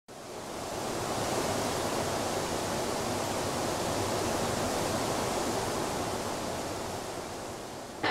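Steady rushing wind, fading in at the start and easing off a little near the end.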